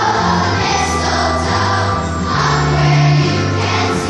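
A large choir singing, with sustained low notes underneath.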